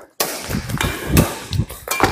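Badminton rackets hitting a shuttlecock during a feeding drill: several sharp strikes, the loudest about a second in.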